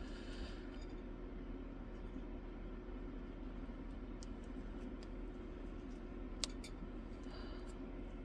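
A few faint, sparse clicks and light scratches, the sharpest about six seconds in, as a scalpel tip cuts and picks at clear tape on a diamond-painting canvas, over a low steady room hum.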